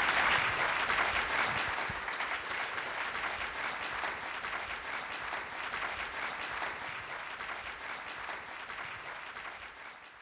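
Audience applauding, loudest at first and slowly dying away.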